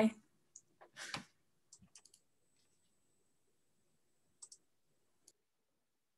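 A few faint, sharp clicks, some around two seconds in and two more near the end, after a short breathy sound about a second in, over a quiet room.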